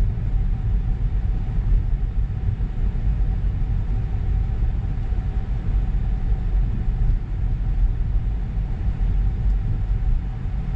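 Road and tyre noise heard inside the cabin of an electric 2023 Tesla Model 3 rolling slowly along a paved street: a steady low rumble with a faint steady tone above it and no engine note.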